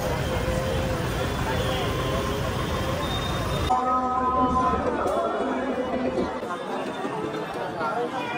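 Crowd chatter outdoors over a low rumble from slow-moving cars. About four seconds in the rumble cuts off abruptly, leaving a quieter murmur of many voices.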